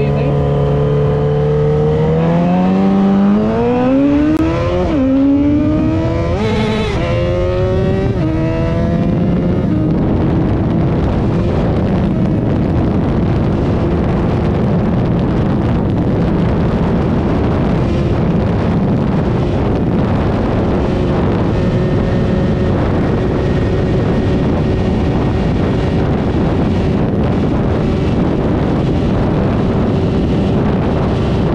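Yamaha XJ6's ECU-remapped 600 cc inline-four engine accelerating at full throttle, its pitch climbing and dropping back through several quick upshifts in the first ten seconds or so. It then pulls on steadily in top gear toward its top speed while a loud rush of wind over the microphone takes over.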